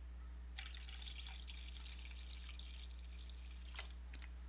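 Apple juice pouring from a large jug into a cup, starting about half a second in and running for nearly three seconds, with a light knock near the end.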